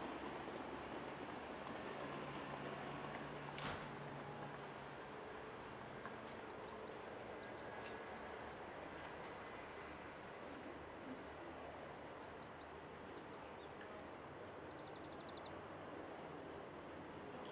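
Faint outdoor ambience, a steady hiss, over which a small songbird gives several quick runs of high chirps, about six seconds in, again near twelve seconds and just before the end; a single sharp click comes about three and a half seconds in.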